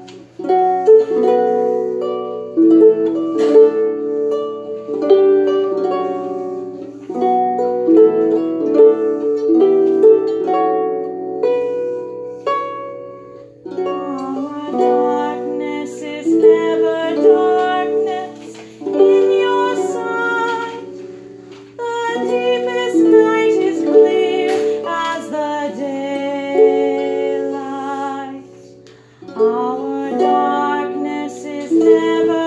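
Harp playing a hymn tune, a plucked melody over chords in phrases, with short breaks about 13 and 21 seconds in.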